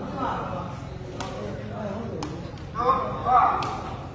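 People's voices calling out during a sepak takraw rally, loudest shortly before the end, with three sharp knocks of the takraw ball being kicked about a second apart.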